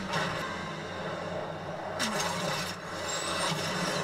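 Action-scene soundtrack: a steady low engine rumble, with a short hit at the start and a brief rush of noise about two seconds in.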